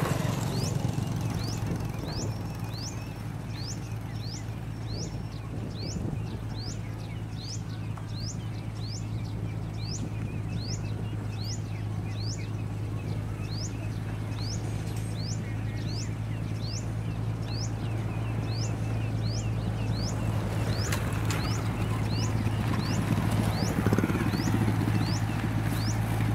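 Motor grader's diesel engine running steadily as it spreads gravel. Throughout, a bird gives a high, rising chirp about every 0.7 s. Noise swells near the end as motorbikes pass close by.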